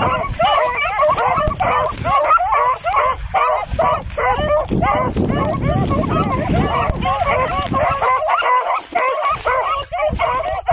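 A pack of hounds baying together, several dogs' voices overlapping in a continuous chorus of rising-and-falling yelps and bawls.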